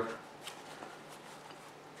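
Faint rustling and a few light ticks as a vacuum cleaner filter bag with a plastic mounting plate is handled.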